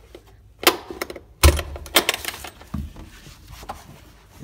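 Seat latches in a Suzuki Carry mini truck cab being released and the seat tipped up. A sharp click comes first, then a louder clack with a thud about a second and a half in, followed by a few lighter clicks and knocks.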